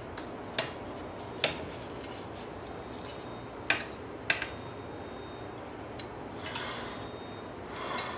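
Metal slotted spatula clicking and scraping against a glass baking dish as slices of set besan halwa are prised out: four sharp clicks in the first half, then a soft scrape near the end.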